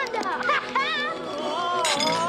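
Screams and shrieks of disgust, sliding up and down in pitch, over orchestral film-score music, with a sharper burst near the end.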